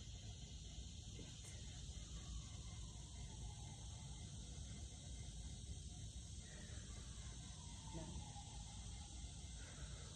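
Steady high-pitched insect chorus over a low, even background rumble, with a few faint rising and falling tones underneath.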